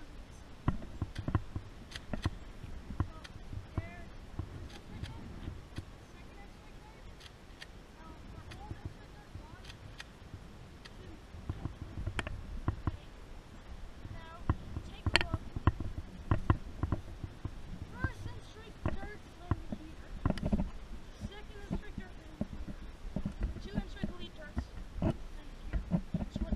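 A Nerf blaster being primed and fired, sharp clicks and knocks scattered through, over low wind rumble on the microphone. Faint voices come in at times.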